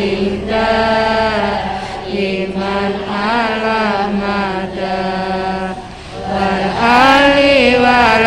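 A single voice singing long, drawn-out, wavering notes of a Javanese Islamic devotional song over a steady sustained accompaniment tone. The voice fades briefly about six seconds in, then comes back louder on higher notes.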